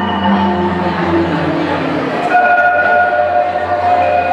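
Marimba music playing held, rolled notes, with a new set of notes coming in a little past halfway, over a steady low hum.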